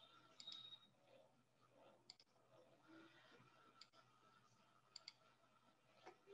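Faint computer mouse clicks, mostly in quick pairs, four times over a near-silent room tone.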